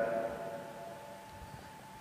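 A pause between a man's spoken words: the echo of his last word fades in the first half-second into quiet room tone, with a faint steady tone underneath.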